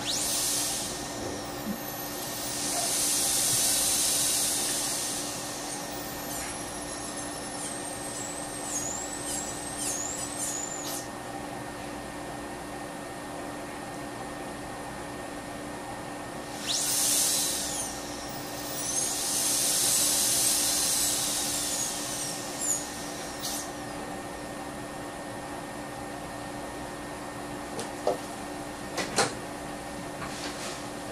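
Dental handpiece with a round bur cutting into a plastic typodont tooth: two spells of high, hissing whine whose pitch wavers and glides as the bur is pressed and eased off, over a steady low hum. A couple of sharp clicks near the end.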